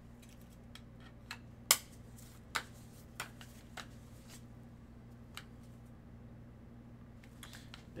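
Handling of a trading card and its clear plastic holder: a few short, sharp plastic clicks and taps, the loudest about two seconds in, over a steady low hum.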